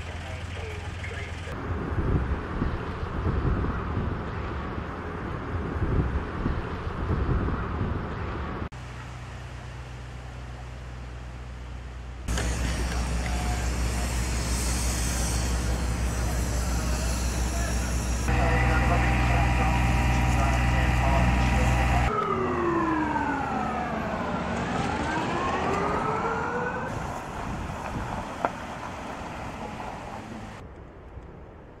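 Separate bushfire-scene recordings cut together: an uneven rumble, then a steady hiss of water spraying from a fire hose, then a steady engine drone, the loudest part. About three-quarters of the way through, an emergency-vehicle siren sweeps down in pitch and back up.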